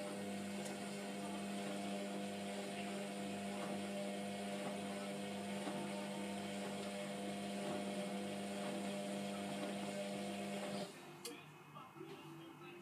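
Hotpoint Aquarius WMF720 washing machine's motor humming steadily as it turns the drum during the wash, then cutting off suddenly near the end.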